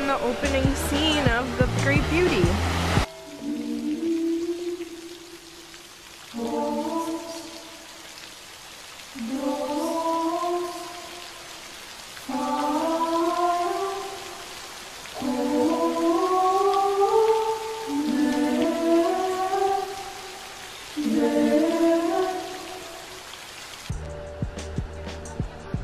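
Background music with a steady beat cuts off about three seconds in. A choir then sings slow, sustained, gently rising phrases in several voices, one about every three seconds with quiet pauses between.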